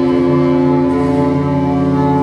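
A rock band jamming holds a sustained, droning chord: several steady notes ringing together, with no drum hits.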